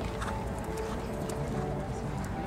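A dressage horse's hoofbeats on the arena footing, heard over background music with held notes.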